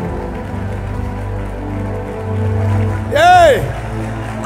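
Soft background music of sustained, held chords with a low bass hum, running steadily. About three seconds in, a man's short, loud shout into a microphone rises and falls in pitch.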